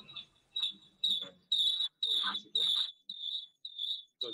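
Broken-up, garbled speech coming through a remote live-link audio feed, cut into short bursts about twice a second, each with a shrill high tone riding on it. This is the sign of a poor connection to the field reporter.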